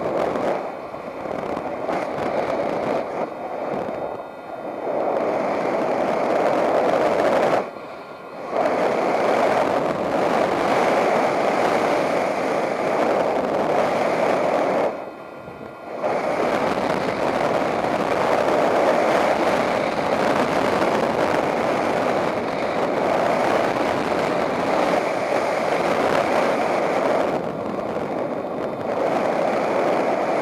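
Airflow of paraglider flight rushing over the camera microphone, a steady wind rush that briefly drops away twice, about 8 seconds in and again about 15 seconds in.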